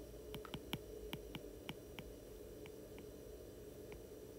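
Faint, irregular light ticks of a stylus tip tapping on a tablet screen while a word is handwritten, about ten in all, over a faint steady hum.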